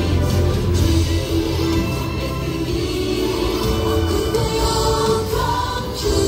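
Music with a choir singing over a full, bass-heavy backing.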